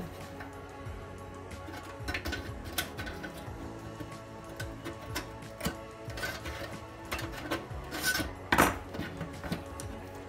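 Needle-nose pliers scraping and clicking against the rusty pressed-steel body of a 1960s Buddy L toy pickup as its small tabs are bent out, with a couple of louder metal clicks near the end. Background music plays underneath.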